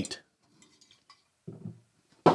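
A quiet pause with a few faint small clinks of a glass tasting glass being handled, then a brief low "mm" from a man's voice about one and a half seconds in.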